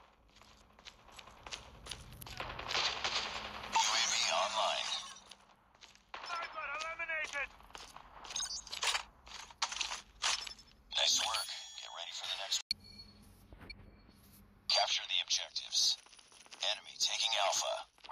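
Bursts of rapid gunfire and sharp shot sounds from a mobile shooter game's soundtrack, with two dense stretches of fire, one early and one near the end.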